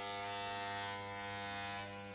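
Corded electric hair clippers running with a steady, even buzz as they are pushed through a man's hair for a buzz cut.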